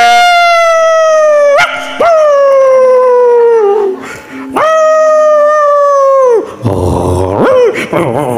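A voice giving long, high howl-like cries, three of them, each scooping up at the start and sliding slowly down in pitch, with a short rising cry near the end. A faint low steady tone runs underneath.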